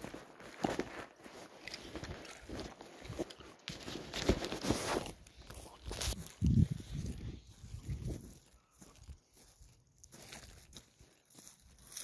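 Footsteps on dry stubble and grass, with rustling and knocks from a handheld phone moving as he walks. A heavier low thump comes about six and a half seconds in, and the steps grow quieter and sparser toward the end.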